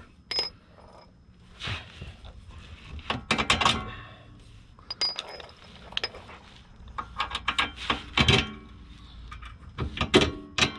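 Scattered metallic clinks and knocks of a steel bolt and washers being handled and set down on concrete during a rear shock bolt swap, with two short ringing pings, about half a second in and again about five seconds in.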